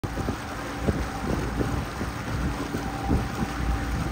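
A boat's engine running steadily, with wind buffeting the microphone in uneven gusts.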